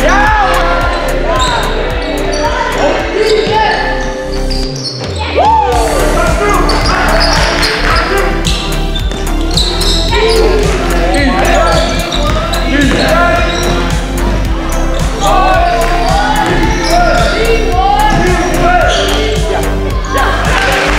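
Basketball game in a gym: the ball bouncing on the hardwood court, short squeaks, and players' voices, over steady background music.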